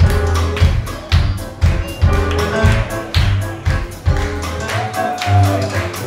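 Live band music: a drum kit keeping a steady beat of about two strokes a second over electric bass and keyboard.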